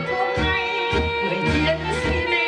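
A woman singing into a microphone over instrumental accompaniment, with held notes over a steady bass pulse.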